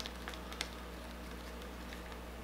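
Quiet room tone with a steady low hum, and a few faint small ticks in the first second.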